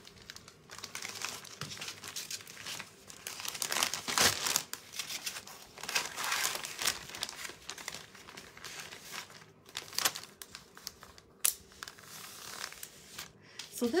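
Plastic zipper storage bag crinkling in irregular bursts as hands rummage through it.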